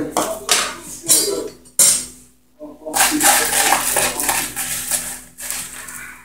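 Kitchen clatter of a plastic tub and a spoon knocking and scraping against an aluminium pressure-cooker pot as frozen chopped green onions are shaken and spooned into a soup: a few short rattling bursts, then a longer stretch of scraping and clinking.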